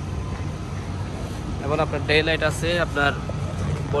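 A voice speaking for about a second and a half in the middle, over a steady low rumble.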